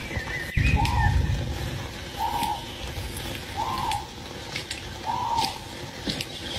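A short hooting call repeated four times, evenly spaced about a second and a half apart, each note rising and falling slightly, over a low rumble.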